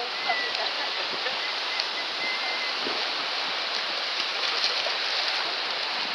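Small surf waves washing in over a flat sandy beach, a steady rushing hiss of water without a break.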